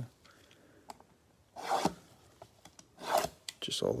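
Gloved hands rubbing and sliding on a cardboard trading-card blaster box: two short rasps, about one and a half and three seconds in, the first the louder.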